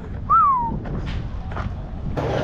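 A single short whistle-like note, rising briefly and then falling, heard over steady low background noise.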